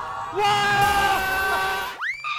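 A long bleating cry, held at a nearly even pitch for about a second and a half. It is a comic sound effect cut into the edit at the game's success.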